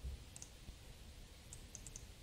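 Faint, brief sharp clicks of a steel-tip dart being thrown and landing in a bristle dartboard, a pair about half a second in and a quick cluster near the end, with a dull low thump right at the start.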